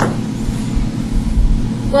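A steady low hum and rumble of background noise, with no talk over it until a voice starts a word just before the end.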